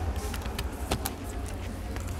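Light clicks and knocks of an opened laptop's plastic chassis and cable connectors being handled, the sharpest click about a second in, over a steady low rumble.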